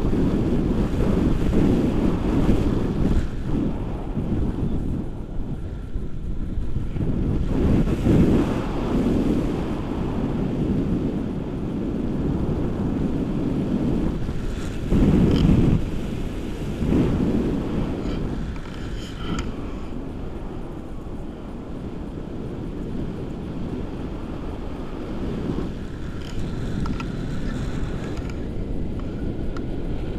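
Wind rushing over a camera microphone in flight under a tandem paraglider: a steady low roar of airflow, with stronger gusts about eight and fifteen seconds in.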